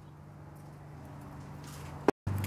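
Faint steady low hum of background noise, with a brief rustle near the end.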